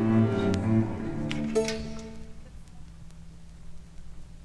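Music played from a vinyl record: low sustained instrumental notes that fade away over the first two seconds or so, leaving a quiet stretch near the end.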